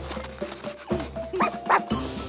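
A cartoon puppy yapping twice in quick succession, about a second and a half in, over light background music.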